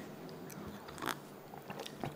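A person drinking from a mug: quiet sipping and swallowing with a few soft mouth clicks, one about a second in.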